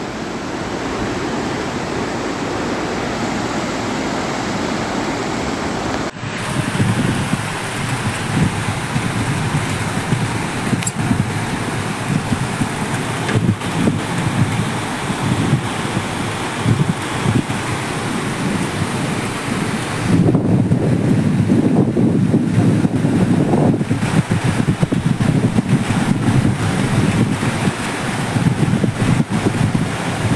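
Fast-flowing floodwater rushing in a steady torrent, with wind noise on the microphone. The sound changes abruptly about six seconds in, and again about twenty seconds in, where it grows louder.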